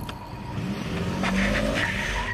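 Pickup truck engine revving up as the truck pulls away hard, its pitch rising, with tyres squealing on the pavement in the second half.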